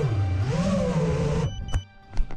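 FPV racing quadcopter's motors and propellers buzzing, the pitch swinging up and down with the throttle, then cutting off abruptly about one and a half seconds in. Soft background guitar music runs underneath.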